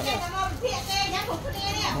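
Several people talking at once, some in high, child-like voices.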